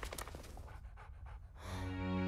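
Small furry dog-like creature panting in quick, short breaths. A sustained musical chord swells in near the end.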